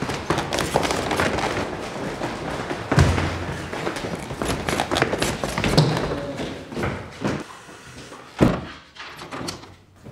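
Several people's hurried footsteps on stairs, with clothing rustle and handling knocks and a heavy thud about three seconds in. A door then bangs shut with a single sharp knock about eight seconds in.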